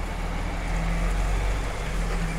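Steady low rumble with a constant, even hum from a running motor, with no change through the moment.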